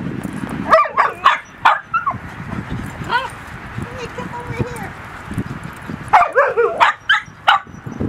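Small dog giving short, high-pitched warning barks at a husky, telling it to back off: a quick volley about a second in and another from about six to seven and a half seconds, with a lower drawn-out note in between.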